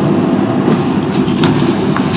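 A steady low rumble of background noise with no clear speech, the same hum that lies under the meeting audio throughout.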